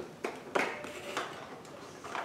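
A small pen gift box being opened and its contents handled: a few short taps and clicks with soft rustling of the packaging.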